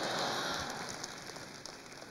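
Congregation applauding, the clapping dying away over the two seconds.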